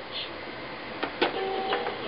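Electronic Thomas & Friends story-reader book toy: two sharp plastic clicks about a second in, then a short electronic tone of two steady pitches from the toy's speaker.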